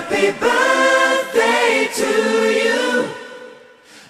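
Background music: a birthday song sung by voices in choir-like harmony, with long held notes, dipping in level near the end.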